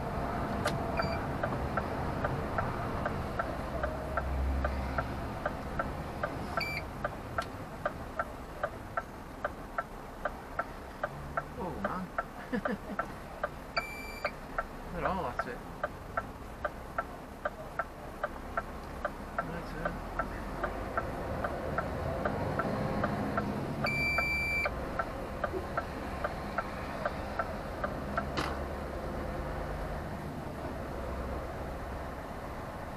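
Turn-signal indicator ticking steadily, about one and a half ticks a second, over the engine and road noise inside a lorry cab as it goes round a roundabout. Three short high beeps sound, the clearest near the end.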